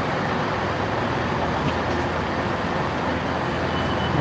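East Midlands Railway Regional diesel multiple unit idling at the platform: a steady, unchanging low engine drone.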